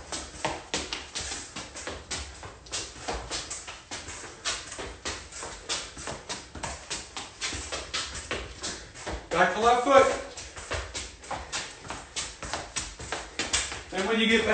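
Quick, repeated taps of a soccer ball against a shoe, mixed with sneaker scuffs on a concrete floor, about three or four a second and uneven. A brief voice sound comes about nine and a half seconds in.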